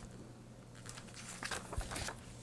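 Paper pages of an instruction booklet being handled and turned: a few soft rustles and light taps, mostly in the second half, with a low thump near the end.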